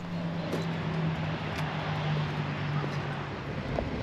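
Motorcycle engine running at a steady cruising speed, heard on board, with a steady hiss of road and wind noise. The engine note fades shortly before the end.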